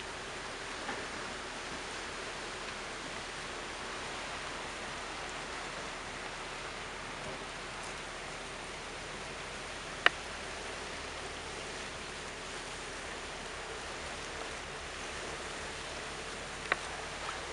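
Steady rushing and splashing of water from a lake freighter passing close by, as a discharge stream pours from an outlet in the side of its hull. A single sharp click comes about ten seconds in.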